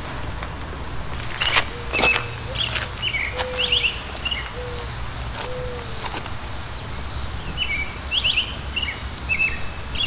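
Birds chirping outdoors: two spells of quick high chirps, one in the first half and one near the end, with a lower call repeating a few times in the first half. A few sharp clicks stand out, over a steady low background rumble.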